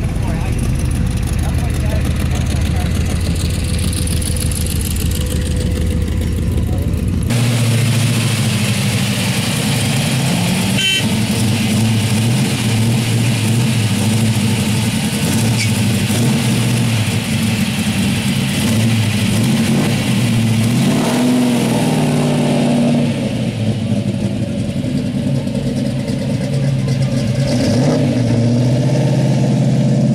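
A car engine idling with a steady rumble, blipped up and back down about two-thirds of the way through, most likely the lime-green Plymouth Barracuda's. Before a sudden change a few seconds in, a different, deeper steady rumble.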